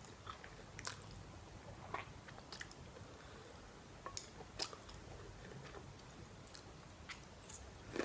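Quiet, close-up chewing of a mouthful of noodles, with soft wet mouth clicks about once a second.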